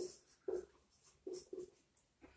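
Marker pen writing on a whiteboard: about four short, separate strokes.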